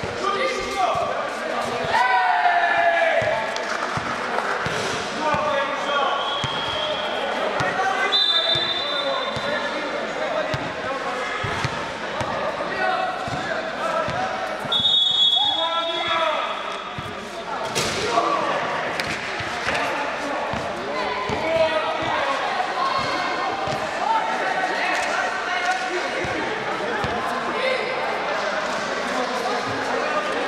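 A basketball is dribbled and bounced on an indoor sports-court floor, with repeated knocks all through, over the players' voices calling out. A few brief high-pitched squeaks come in the middle.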